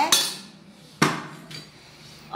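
Two sharp knocks about a second apart, each dying away quickly, from a plastic blender jar being handled on the counter.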